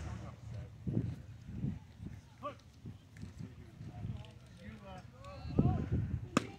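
Faint, distant voices calling out across an outdoor baseball field, with a louder low thump near the end.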